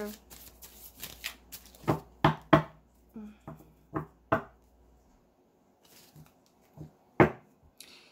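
A tarot deck being shuffled and cut by hand: a quick run of card slaps and flicks that dies away about halfway through.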